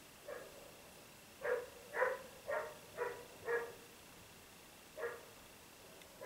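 A dog barking: a single bark, then a quick run of five barks about half a second apart, and one more bark near the end.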